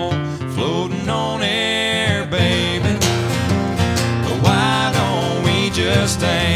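Two acoustic guitars playing an up-tempo country song, chords strummed under a melodic lead line whose notes slide in pitch.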